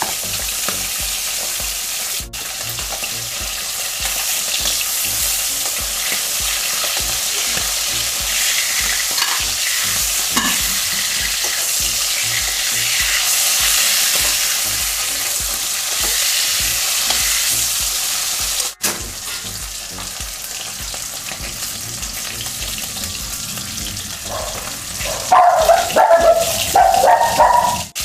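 Whole turmeric-coated fish frying in hot oil in an aluminium kadai, a steady sizzle, with a metal spatula moving in the pan. The sound grows louder for the last few seconds.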